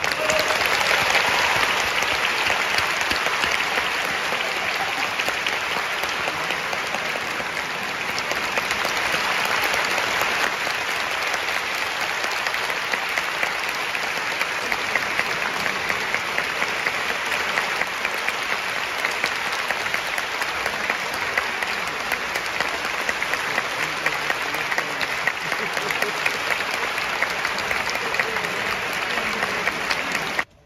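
Concert audience applauding, a dense steady clapping that carries on throughout.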